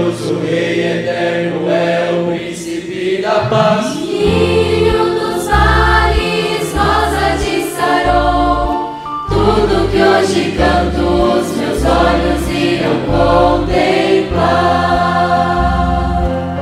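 A youth choir singing a gospel hymn in several voices over instrumental accompaniment, with deep held notes changing every second or so beneath the voices.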